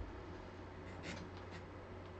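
Faint rustling and scraping of cards or paper being handled, with one slightly louder brush about a second in, over a steady low room hum.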